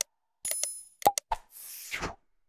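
Sound effects of an animated subscribe-button graphic: popping mouse clicks, a short high bell ding about half a second in, three more quick clicks around one second, then a soft whoosh near the end.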